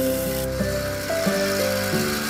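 Belt grinder's abrasive belt grinding the rusty steel tang of an old katana: a steady hiss of metal on the belt, under background music with held and plucked notes.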